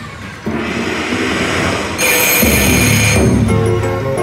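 Double Blessings penny slot machine's electronic sound effects. A rising whoosh starts about half a second in, then about two seconds in a loud, bright burst with a deep rumble underneath as the bonus is triggered, and chiming melodic notes return near the end.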